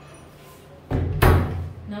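A sudden dull thump with a sharp knock in it, about a second in, over within half a second.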